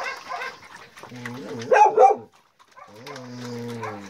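Dogs barking in quick short bursts, with two loud barks close together about two seconds in, then a steady drawn-out low voice near the end.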